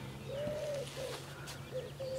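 A pigeon cooing: one soft low coo about half a second in, then two shorter, fainter notes, over a faint steady low hum.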